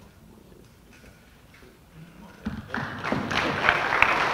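A quiet pause, then an audience applauding, starting about two and a half seconds in.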